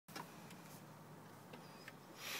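Near silence in a parked car's cabin, with a few faint clicks.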